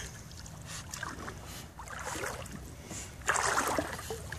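Water sloshing and lapping around a miniature poodle as she paddles through shallow water, with a louder splashing rush about three seconds in.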